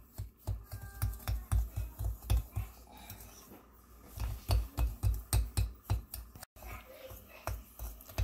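Dry seasoning being mixed by hand in a glass bowl: a rhythmic scratchy rustling of fingers working through the powder against the glass, with dull thumps about two to three times a second, easing off for about a second midway before resuming.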